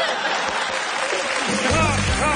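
Studio audience applauding, with music with a heavy bass beat coming in about one and a half seconds in.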